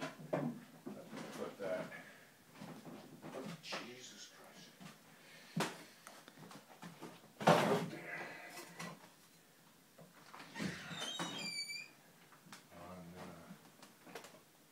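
Indistinct voices in a small room with scattered knocks and handling noise: one sharp knock about five and a half seconds in, a louder short thump in the middle, and a brief high squeal near the end.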